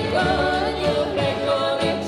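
Live Ukrainian folk band: women singing together over fiddle, accordion, plucked double bass and acoustic guitar, with the melody moving steadily.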